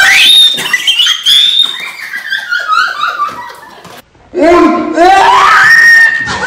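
A woman screaming in fright: a long, high scream at the start that falls away into shorter cries, then a second loud, high scream from about four and a half seconds in.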